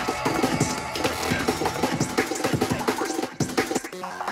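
Free tekno DJ mix: dense electronic dance music with a driving, repeating beat.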